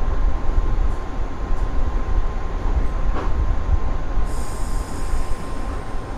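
415-series electric train heard from inside the front car, running with a heavy low rumble as it slows along a station platform. About four seconds in, a high squeal sets in as it comes to a stop.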